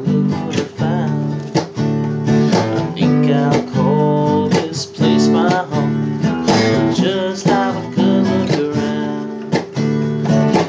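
Acoustic guitar strummed in a steady rhythm, with a man singing a melody over the chords.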